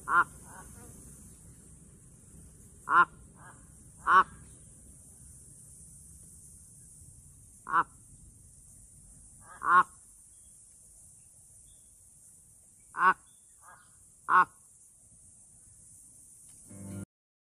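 Crow giving short, harsh single caws, seven in all, spaced a few seconds apart. Some caws are followed by a fainter short note.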